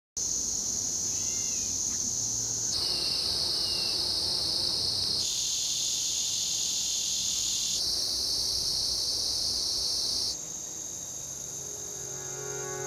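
Insect chorus of chirring crickets: a steady high-pitched trill whose pitch shifts every two and a half seconds or so, at edits between recordings. A few faint bird chirps come in over it in the first four seconds, and it grows a little quieter near the end.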